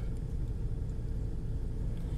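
A steady low rumble with faint hiss above it: the background noise of the recording, with no voice in it.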